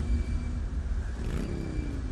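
Road traffic: a car on the road, a steady low rumble with an engine note that rises in pitch in the second half.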